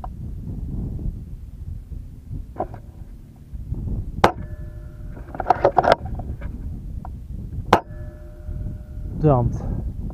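Two sharp air rifle shots about three and a half seconds apart, fired at a prairie dog by two shooters, over a steady rumble of wind on the microphone. A cluster of sharper cracks falls between them, about a second after the first shot.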